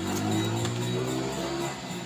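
Guitar played in Maguindanaon dayunday style, plucked, over a low held note that sinks slightly in pitch and fades out near the end.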